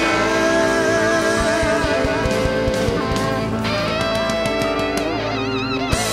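Live country band playing the closing bars of a song: fiddle, pedal steel, electric guitar, piano, bass and drums sustaining a long final chord together, with wavering vibrato notes on top near the end.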